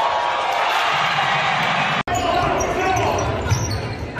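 Live sound from a basketball game in a gym: a basketball bouncing on the hardwood and players moving, over steady crowd chatter that echoes in the hall. About halfway through the sound drops out for an instant where the footage cuts to another game.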